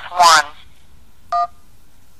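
A single short touch-tone (DTMF) beep on a phone line, the two-pitch tone of the 1 key, pressed about a second after an automated phone menu says 'please press 1'.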